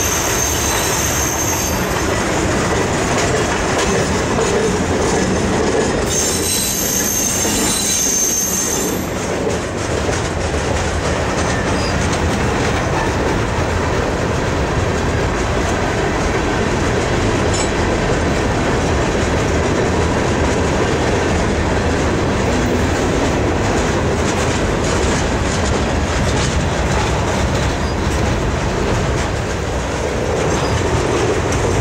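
Freight cars of a long train (covered hoppers, boxcars, gondolas) rolling past close by. The wheels rumble and clatter steadily over the rail joints, and a high-pitched wheel squeal sounds briefly at the start and again for a few seconds around six to nine seconds in.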